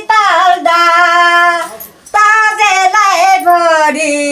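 A single high voice singing a Nepali Bhailini folk song in long, sliding phrases, with a brief break for breath about two seconds in.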